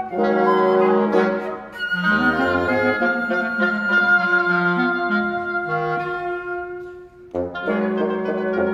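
Woodwind quartet, bassoon and clarinet among them, playing long held notes that overlap and shift against one another. About seven seconds in the sound thins to a brief near-pause, then the instruments come back in together.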